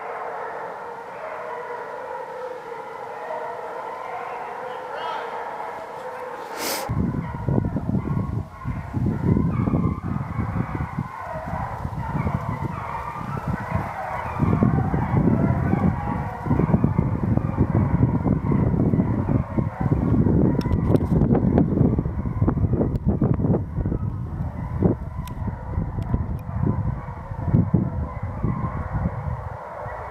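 A pack of Penn-Marydel foxhounds in full cry, many hounds baying together in an overlapping chorus. About seven seconds in there is a click, and from then on a heavy rumbling noise on the microphone, from the camera being carried, lies over the baying.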